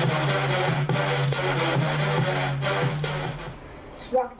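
Electronic intro music for a video-compilation logo: a steady low drone under a gritty, rasping texture with a beat a little over twice a second, fading out about three and a half seconds in.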